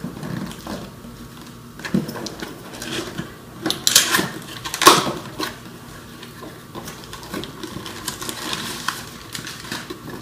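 Cardboard shipping box being torn open by hand: irregular ripping and scraping of the cardboard flaps, the loudest rips about four and five seconds in, with rustling of crumpled paper packing as it is pulled out.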